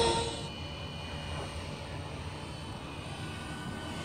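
Radio-controlled Airwolf scale model helicopter flying at a distance: a faint, steady hum of its rotor and motor. A louder sound carried over from just before, music by its tag, dies away in the first half second.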